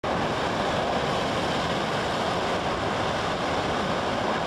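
Ocean surf breaking and washing over shoreline rocks: a steady, even rushing of water.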